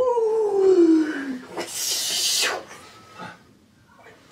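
A dog's drawn-out howl that falls steadily in pitch and fades out about a second and a half in. A short hissing rustle follows around the middle.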